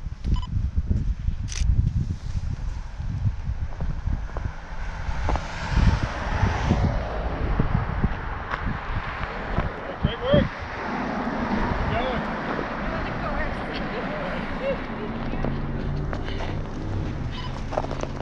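Wind buffeting a moving body-worn camera's microphone, with a runner's footfalls on a snowy road shoulder. Toward the end there are faint voices and a steady low vehicle sound.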